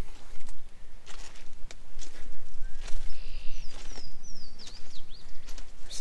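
A small songbird singing a run of short, high whistled notes that slide downward, starting about halfway through. Under it are irregular footsteps and a steady low rumble of wind on the microphone.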